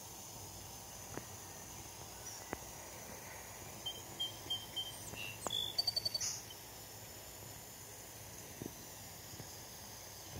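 Quiet outdoor background with a faint high insect drone. A bird gives a row of short high chirps about four seconds in, then a louder quick burst of chirps near the middle.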